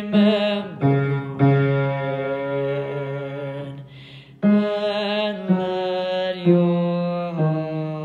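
One low voice sings the tenor line of a choral song in slow, held notes with vibrato, stepping from pitch to pitch, with a short break for breath about four seconds in.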